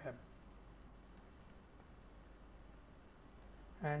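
A few faint, sharp clicks from working a computer, spaced a second or so apart, over a low steady hiss.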